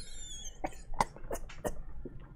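A man's stifled, breathy laughter in about four short bursts, quiet and off the microphone.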